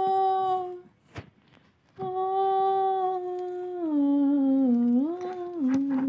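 A person's voice humming long, drawn-out notes as an eerie ghost's moan: one short note, a pause, then one long note that slides down in pitch, dips and rises again near the end.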